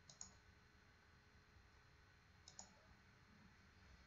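Near silence with faint computer mouse clicks: a quick pair just after the start and another pair about two and a half seconds in.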